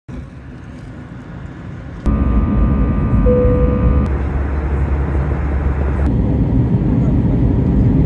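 Airbus A320 cabin sound of engine and airflow noise in short clips cut together about every two seconds. A quieter first clip gives way to louder engine noise with steady whining tones, and the sound cuts off abruptly at the end.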